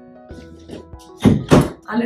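Soft background music with steady held notes, broken about a second in by two heavy thuds in quick succession, about a third of a second apart.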